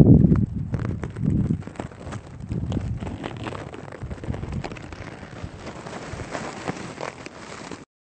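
Grass and leaves rustling and crackling close to the microphone, with many small clicks. A low rumble comes in the first second. The sound cuts off suddenly just before the end.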